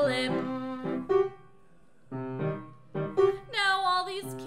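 Keyboard playing a short instrumental passage of separate notes between sung lines, with a brief lull just over a second in.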